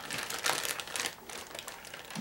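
Crinkling and rustling of the bag around a rolled self-inflating foam air pad as it is handled and turned over, a quick uneven run of crackles.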